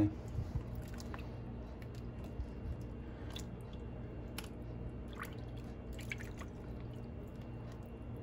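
Scattered small drips and splashes of water as a leather baseball glove is held and shifted underwater in a filled sink, over a steady low hum.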